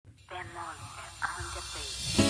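A quiet voice over a steady hiss.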